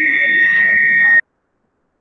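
Loud, steady high-pitched whine with faint voices underneath, coming in over a participant's unmuted microphone on an online video call; this disturbance cuts off suddenly about a second in as the line goes silent, as when it is muted.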